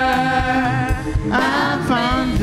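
A gospel song being sung: a long held note, then a new line starting about one and a half seconds in.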